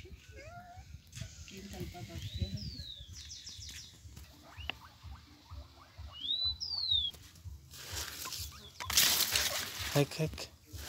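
Dry, fresh-picked corn husks rustling and crackling as they are handled, loudest in the last two seconds. Two short whistled calls, each a quick downward sweep, come a few seconds apart behind it.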